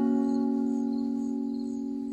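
Music: a strummed acoustic guitar chord ringing out and slowly fading, with faint high chirps repeating in the background.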